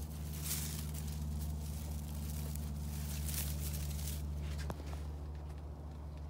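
A steady low hum, with soft rustling that swells about half a second in and again about three seconds in, and one faint tick near the five-second mark.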